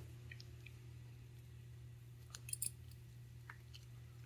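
Faint scratching of a stiff, nearly dry paintbrush swept over a textured 3D-printed resin base, with a few soft scrapes a little past halfway, over a low steady hum.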